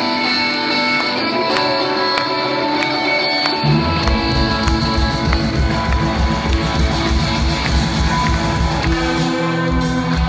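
Live rock band playing, heard from the crowd: electric guitar carries the first few seconds with little bass under it, then the bass and drums come back in about four seconds in.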